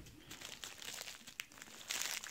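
Plastic mailer packaging crinkling as it is handled, faint at first and getting louder near the end.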